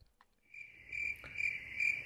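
A high, insect-like trill, steady in pitch and pulsing about two or three times a second. It sets in about half a second in and runs on past the end.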